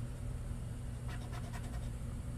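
A coin scratching the latex off a lottery scratch-off ticket in a few faint, short strokes about a second in, over a steady low hum.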